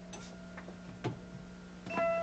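Quiet room tone with a steady low hum and a few soft, irregular footsteps as a person walks in through a doorway.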